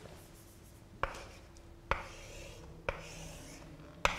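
Chalk writing on a blackboard: three sharp taps about a second apart as the chalk strikes the board, with faint scratching strokes between them.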